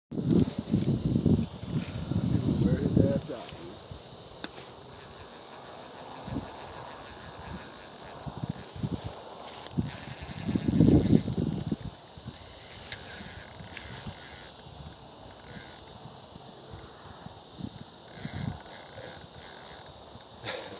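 Fishing reel being cranked in spells, its gears and ratchet giving a high, rattling buzz that starts and stops several times. Louder low rumbling on the microphone at the start and again about halfway through.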